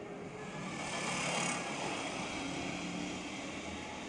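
A motor vehicle's engine running out of view, its noise swelling about a second in and then slowly fading.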